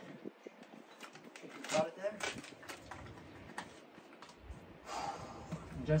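A man's voice in short low mutters, about two seconds in and again near the end, with a few light clicks and taps between them.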